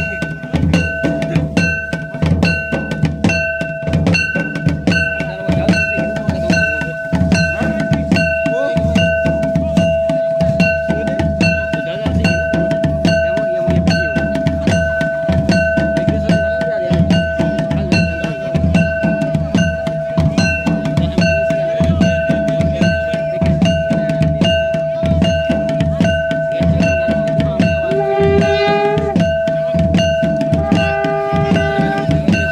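Drums beating a steady rhythm under a continuous held high note, the music accompanying a dancing procession; near the end a melodic instrument plays a short rising phrase over it.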